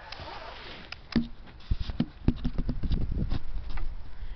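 Camera handling noise: a soft rustling hiss, then a run of irregular soft knocks and thuds as the camera is moved and set in place, with a brief low voiced sound about a second in.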